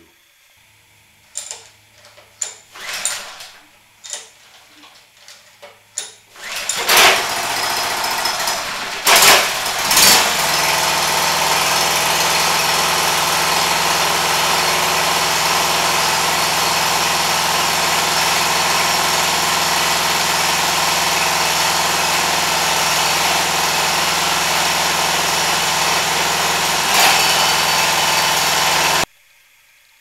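Small gasoline engine of a homemade 12 V generator, coupled to a car alternator, being started for the first time. After a few short sounds it catches about seven seconds in, surges a couple of times, then runs steadily at low speed before cutting off suddenly near the end.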